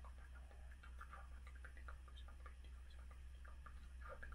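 Near silence with faint, irregular small clicks, several a second: mouth and lip sounds of a man praying under his breath into a phone held against his mouth. A low steady hum runs underneath.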